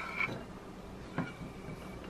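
Serrated kitchen knife scraping chopped vegetables across a wooden cutting board onto a plate: two short, squeaky scrapes about a second apart.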